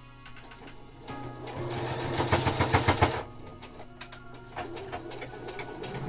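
Electric sewing machine stitching in one short run of rapid, regular needle strokes, starting about a second in and stopping abruptly after about two seconds.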